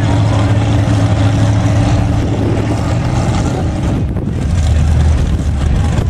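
Lifted mud-bog pickup truck's engine running loudly and steadily. Its note drops lower a little after four seconds in.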